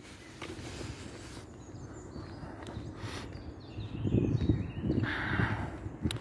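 Footsteps on an asphalt footpath with quiet outdoor background noise, the steps and rustle growing louder in the last two seconds.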